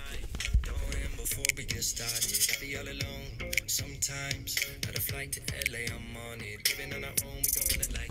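A song playing at full volume through Ruroc ShockPods helmet speakers, heard from inside the helmet, with scattered clicks and knocks from the helmet being handled.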